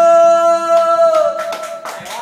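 A singer holding a long final note of a slow duet, which dips slightly in pitch and ends about a second and a quarter in, followed by a few scattered claps near the end.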